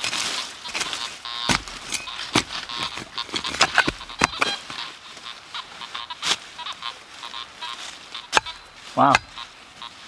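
Hand digging tool chopping and scraping into rocky soil and dry leaf litter, with irregular sharp knocks spaced about a second apart. A short exclamation of "wow" comes near the end.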